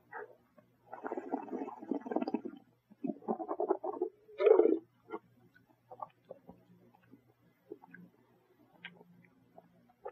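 A mouthful of red wine being swished and slurped with air drawn through it, as a taster aerates it on the palate. There are two gurgling spells, a short louder sound just after four seconds, and then small mouth and lip clicks.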